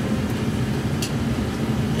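Electric dog-grooming clippers fitted with a 5/8 UltraEdge blade, running steadily with a low, even motor hum while not cutting.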